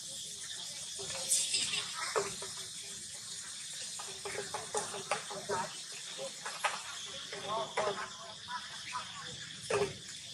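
A steady high-pitched insect drone, with scattered clicks and short vocal sounds.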